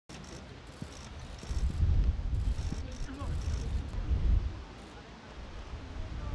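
Wind buffeting the microphone in low rumbling gusts, under faint, indistinct talk from the people present.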